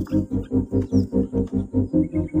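White-breasted waterhen (ruak) calling: a fast, even run of low pulsed calls, about eight a second, repeating without a break.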